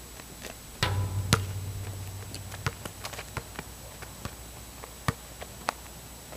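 A loud thump about a second in with a low rumble after it, then scattered light knocks of a basketball bouncing on an outdoor court.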